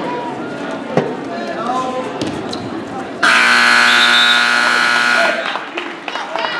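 Gym scoreboard buzzer sounding one steady, loud, harsh tone for about two seconds, starting a little past halfway and cutting off sharply, marking the end of a wrestling period. Spectators' voices are heard underneath.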